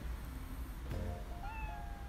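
A domestic cat gives a short meow about a second in, rising in pitch and then holding, over quiet background music.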